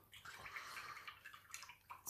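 Faint, irregular swishing of water, a paintbrush being rinsed in a water pot.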